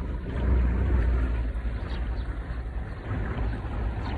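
Small boat under way through floodwater: a steady low rumble with a wash of noise over it, a little louder around the first second.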